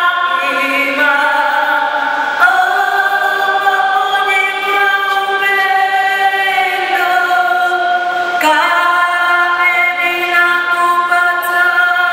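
A choir singing slowly in long held chords that shift every couple of seconds.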